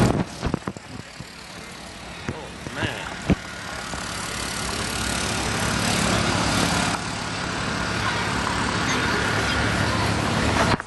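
Busy city street ambience: traffic and the chatter of passers-by, with a few sharp clicks in the first second and another about three seconds in. The noise grows louder from about four seconds in.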